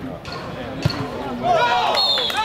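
A football struck once with a dull thud a little under a second in. Several voices then break into loud shouting near the end.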